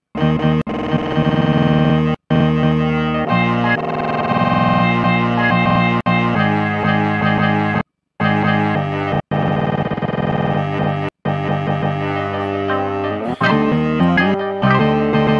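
Slices of a sampled music record played back from an Akai MPC Studio: sustained instrumental notes that cut off abruptly and restart several times as the chop points are auditioned.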